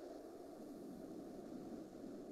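Faint steady hiss of room tone on an open microphone, with no distinct event.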